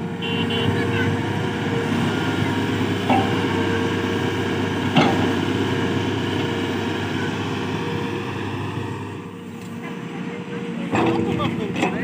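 Tata Hitachi Zaxis 210LCH hydraulic excavator's diesel engine running steadily under load as it digs and dumps soil, with a couple of short knocks from the bucket and arm. The engine eases off briefly shortly before the end, when voices come in.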